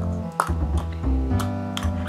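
Background music: plucked guitar over a low bass line, with two short clicks.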